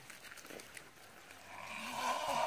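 Faint hiss, then a drawn-out animal-like call starting about three-quarters of the way in and carrying on past the end. The men hearing it take it for a farm animal; its source is unidentified.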